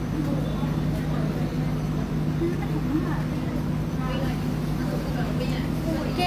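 Steady low hum of a busy indoor hall, with faint voices talking in the background that grow a little more noticeable in the second half.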